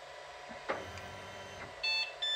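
Guider 2 3D printer's touchscreen giving a short electronic beep near the end, preceded by a faint click about two-thirds of a second in.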